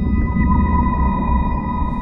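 Background music: a low, deep drone with a thin steady high tone above it, a dramatic sting swelling in on a pause in the dialogue.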